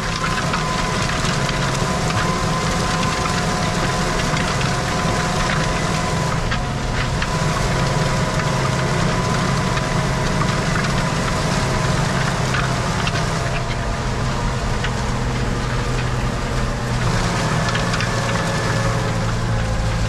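Tractor engine running steadily under load, heard from inside the cab, as it pulls a Mandam disc harrow through stubble at about 12 km/h. A steady drone with a faint whine over it.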